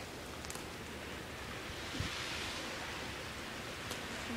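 Steady rushing noise of a small creek flowing, with a short thump about two seconds in.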